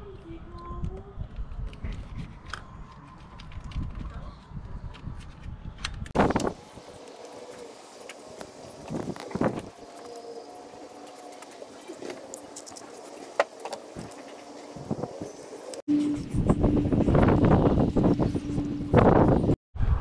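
Small plastic parts being handled: scattered sharp clicks and taps as electrical connectors are worked onto the ignition coils, over a low steady outdoor rumble. The background changes abruptly twice near the end.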